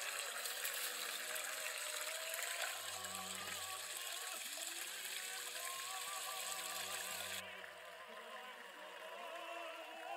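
Water from a small stream splashing and gushing steadily where it spills into a split-bamboo channel, cutting off suddenly about seven and a half seconds in. Background music with a wavering singing voice runs underneath.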